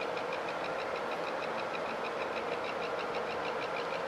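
Stainless steel sheet mirror-polishing machinery running steadily, a constant machine noise with a fast, regular ticking over it.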